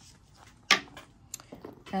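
Hands handling a leather handbag on a wooden tabletop: one sharp knock about two-thirds of a second in, followed by a few light clicks.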